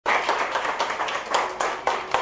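A small audience clapping, with individual claps heard distinctly, easing off somewhat near the end.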